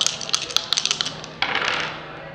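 Two ten-sided dice rolled onto a wooden tabletop, clattering in a quick run of sharp clicks for about a second as they tumble and settle, then a short scraping rush near the end.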